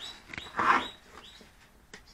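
Soft handling sounds of a plastic RC transmitter being picked up off a workbench: a few light clicks and one short rustle in the first second, then quiet background.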